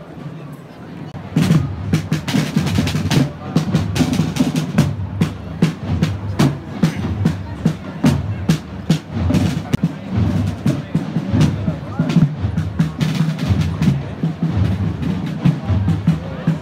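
Procession drums, snare and bass drums, start playing about a second in, a dense run of sharp strokes over a deep beat.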